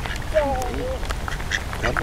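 Mallard ducks quacking, with a few short calls.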